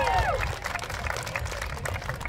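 Applause from a small audience: many hands clapping at once, following the last words of a man's voice at the very start.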